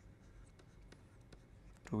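Faint scratching and light ticks of a stylus writing on a pen tablet, over a low steady hum. A man's voice starts right at the end.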